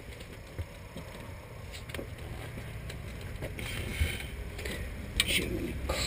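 Faint clicks and knocks of hand tools at work on a vehicle, scattered over a steady low rumble.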